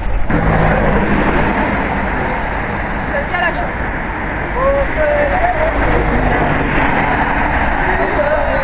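Steady rush of road traffic from cars passing on the adjacent road, with snatches of people talking over it.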